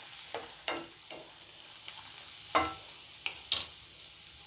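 A utensil scraping and clinking against a stainless steel pan as chopped tomatoes, onions, green chillies and peanuts are stirred, over a faint sizzle. There are about six separate knocks, the loudest two in the second half.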